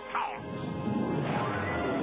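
Cartoon crash sound effect over background music: a falling sweep, then from about half a second in a dense crashing rumble.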